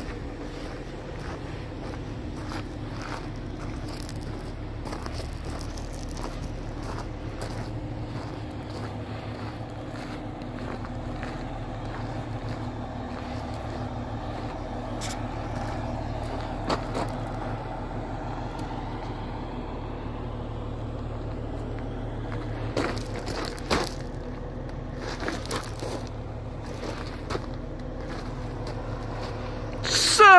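A semi truck's diesel engine idling steadily, with footsteps crunching on gravel as someone walks past the trailer.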